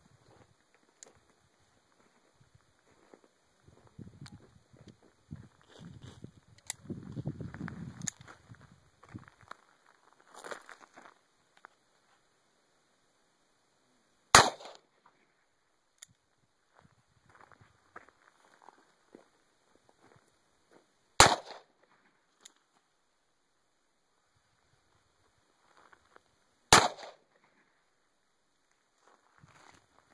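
Three single shots from a Ruger GP100 revolver firing .38 Special rounds, about 14, 21 and 27 seconds in, each a sharp crack with a short echo. Softer knocks and rustling come in the first ten seconds.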